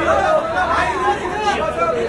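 Overlapping voices: several people talking and calling out over one another, with no other distinct sound.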